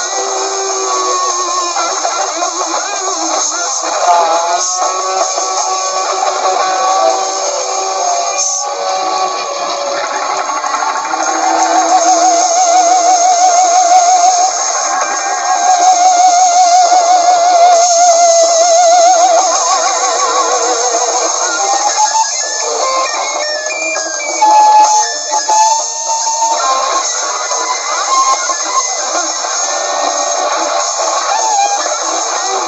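Noise-rock band playing an instrumental passage live, with two electric guitars over drums. In the middle a held guitar tone wobbles up and down in pitch.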